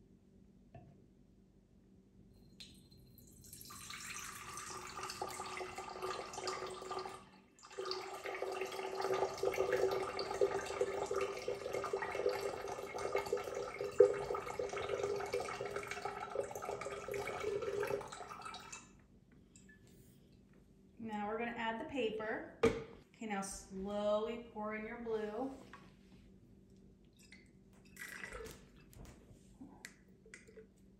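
Green-dyed sugar water poured from a glass flask into a tall glass vase, splashing and trickling into the glass for about fifteen seconds, with a brief break a few seconds in.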